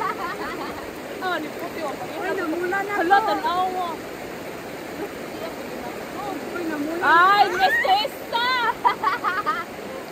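Shallow river flowing over rocks, a steady rushing. Voices chatter over it, loudest and highest near the start and again about seven seconds in.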